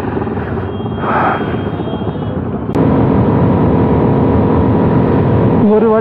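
Bajaj Pulsar NS200 motorcycle running on the highway in traffic, its engine mixed with wind and road noise. About three seconds in the sound suddenly gets louder and steadier.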